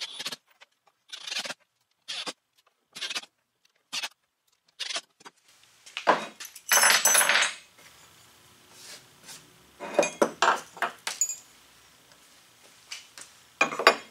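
A few short bursts from a cordless driver setting screws into a steel caster mounting plate, then loose steel hardware (bolts, nuts and caster parts) clinking and rattling as it is handled. The loudest clatter comes about seven seconds in.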